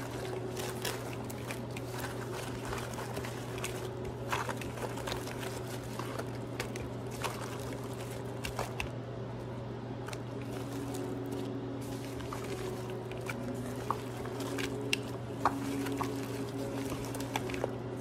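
Fried fish pieces being tossed by hand in sauce in a glass mixing bowl: wet squishing and liquid sounds with scattered light clicks of fish against the glass, over a steady low hum.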